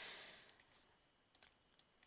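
A few faint, separate clicks from working a computer's mouse and keys, over near silence.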